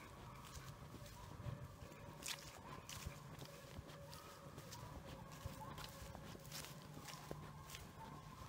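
Footsteps crunching through dry fallen leaves at an uneven walking pace, with a faint steady hum underneath.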